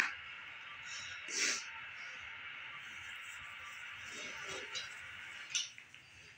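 A steady hiss of white noise from a TV drama's soundtrack, played through the TV's speaker, with a short louder rush about a second and a half in; the hiss cuts out near the end.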